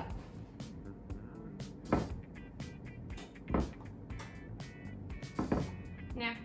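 Background music under four knocks, one every second and a half to two seconds, as a spoon scoops flour from a tall canister into a dry measuring cup.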